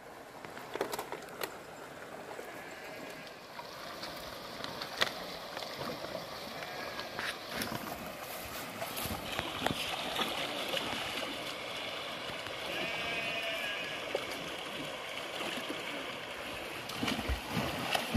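River water running over rocks, a steady rush that grows louder, with a few sharp clicks and knocks. Splashing from swimmers comes in near the end.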